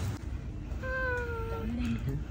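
A single drawn-out meow-like call, held at nearly one pitch and sinking slightly, lasting under a second about halfway through, followed by a short lower note near the end.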